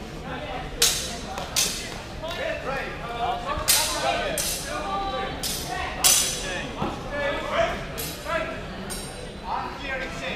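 Steel longswords clashing in a fencing bout: a series of about eight sharp, bright metallic strikes with short ringing tails, irregularly spaced, some in quick pairs.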